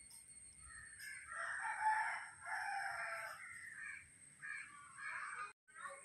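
A rooster crowing once, a long call of about two seconds starting about a second in, followed by a few shorter, fainter calls.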